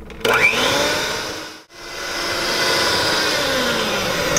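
Electric hand mixer beating softened cream cheese in a glass bowl. The motor whines up to speed, cuts out for a moment about halfway, then runs steadily again.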